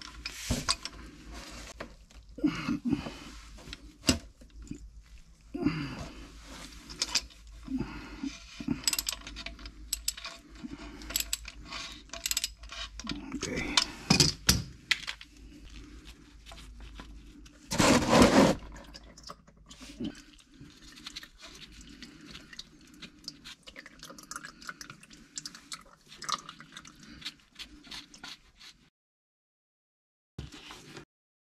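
An oil filter being unscrewed by hand from a 2016 Honda CR-V's engine: scattered clicks, scrapes and handling noises of the gloved hand and the filter, with one louder, short burst of noise about 18 seconds in.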